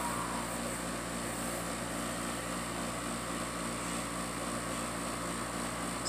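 Electric desk fan running with a steady whir and an even low hum.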